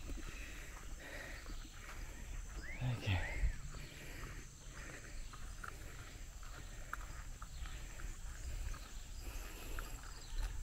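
A steady high-pitched chorus of insects in a tropical rice paddy, with faint scattered ticks and rustles. A short voice-like call comes about three seconds in.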